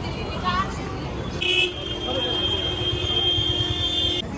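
A vehicle horn gives one long, steady honk, starting about a second and a half in and held for nearly three seconds, over the noise of a busy street crowd and traffic.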